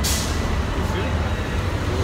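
Heavy street traffic rumbling, a large vehicle such as a bus or truck running close by, with a sharp hiss at the very start that fades within half a second.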